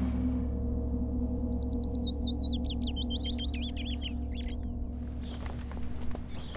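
A deep gong struck once, its low tone ringing on and slowly fading. A songbird twitters in a quick series of high, sweeping chirps from about a second in until about five seconds.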